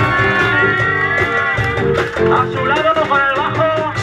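Live rock band of drum kit, bass, electric guitars and saxophone playing an instrumental passage, with long held lead notes that bend in pitch over a steady backing.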